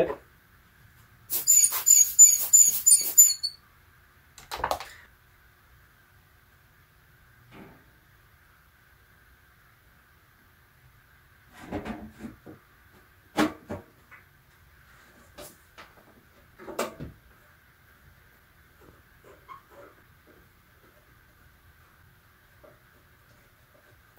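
Rubber air-blower bulb squeezed about six times in quick succession, each squeeze a hissy puff with a squeak, blowing dust off a telescope's primary mirror before reassembly. Later come a few separate knocks and clunks as the mirror cell is fitted into the metal telescope tube.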